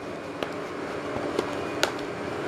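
Plastic DVD cases being handled: a few sharp clicks and taps over a soft rustle of handling.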